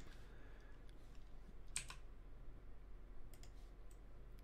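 Quiet clicks from computer input controls: one sharp click a little before halfway, then two fainter clicks near the end, over a faint steady low hum.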